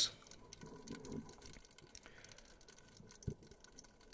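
Faint room tone with a short, low thump about three seconds in.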